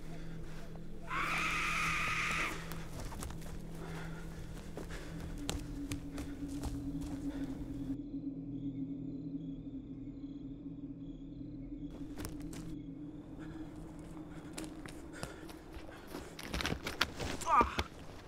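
Film soundtrack of a night woods scene: a low sustained drone with scattered small cracks and steps on the forest floor. A brief loud high-pitched burst comes about a second in, and voices break in near the end.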